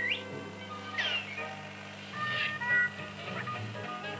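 Cartoon soundtrack playing through a Record V-312 valve television's loudspeaker: music with several swooping, gliding sounds, over a steady low hum.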